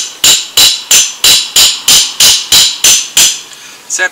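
Hammer blows driving a metal stake into the ground: about eleven sharp metal-on-metal strikes with a slight ring, evenly paced at roughly three a second, stopping a little after three seconds in.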